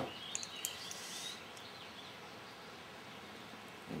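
Faint steady background noise, with a few small clicks and faint high chirps in the first second or so.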